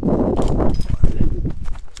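Air rushing over a body-worn action camera's microphone as a rope jumper swings in low at the bottom of the jump, then knocks and scuffs as he is caught and his feet meet the ground, the loudest knock about a second in.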